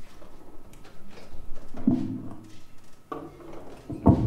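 Clicks and knocks of instruments being handled between tunes as a saxophone is swapped, with a short pitched sound about two seconds in and another after three seconds.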